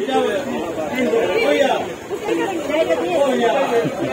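People talking in the background: overlapping voices and chatter.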